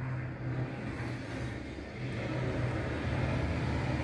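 A steady low hum, a little louder in the second half.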